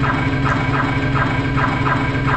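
The dance routine's music track: a held low bass note with a short, bright sound repeating about twice a second over it.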